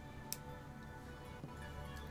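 Faint background music, with a sharp click about a third of a second in and a softer one later, from pliers working a small anodised aluminium jump ring closed.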